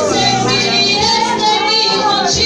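Worship music: a high voice singing a sliding melody over a sustained accompaniment whose low notes change about once a second.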